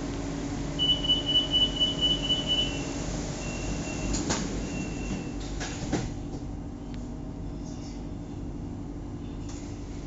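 Bangkok BTS Skytrain door-closing warning: a rapid string of high beeps for about two seconds, then two single beeps, as the doors slide shut with a knock about four seconds in and another about six seconds in. A steady low hum from the standing train runs underneath and drops once the doors are closed.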